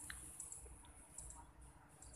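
Near silence: a faint low wind rumble on the microphone with a few short, faint high clicks.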